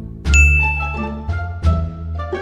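A bright ding sound effect, struck about a quarter second in and ringing for most of a second, over pizzicato string background music.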